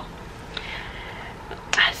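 A pause in a woman's talk: quiet room tone with a faint hiss, then her voice starts up again near the end.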